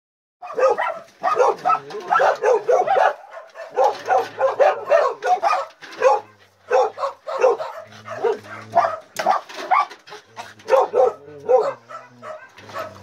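Dogs barking in quick, repeated barks, with brief lulls about three and a half and six seconds in.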